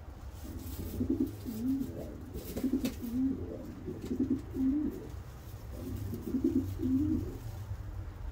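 Racing homer pigeon giving low, throaty coos in about four short bouts while feeding its squab beak-to-beak, over a steady low hum.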